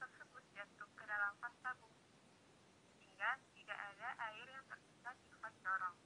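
A woman's voice speaking, thin and tinny as if heard over a telephone line.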